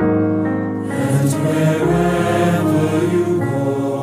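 Music: a piano playing slow held chords, joined about a second in by a choir singing a slow, hymn-like song.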